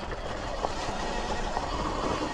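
Sur-Ron Light Bee X electric dirt bike climbing a steep dirt hill in sport mode: a steady rush of tyre, drivetrain and wind noise on the rider's camera microphone, with no engine note.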